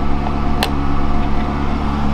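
Ferrari 360 Modena's 3.6-litre V8 idling steadily through a PowerCraft exhaust with its valves closed. A single sharp click about half a second in as the engine-lid release lever in the door jamb is pulled.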